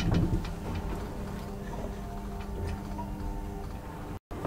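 Graham Brothers traction elevator car travelling in its shaft: a steady machine hum with scattered light clicks and ticks, a little louder at the very start.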